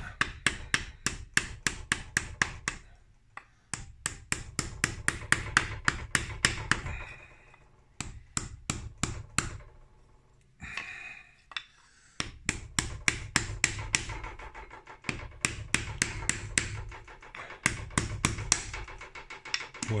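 Rapid light hammer taps on a metal driver tube, about four or five a second in several runs with short pauses, trying to drive the crankshaft seal sleeve into its seal; the sleeve seems to start in but does not go in.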